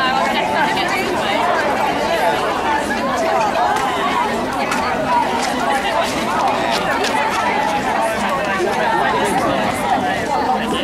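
A crowd chattering: many voices talking over one another at a steady level, with no one voice standing out.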